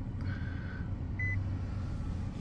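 A single short high beep from the 2020 Nissan Versa's instrument cluster about a second in, the chime that comes with the oil-and-filter maintenance reminder. It sounds over a steady low hum.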